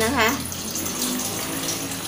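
Water pouring from a plastic jug into a stainless steel pot, a steady stream filling the pot.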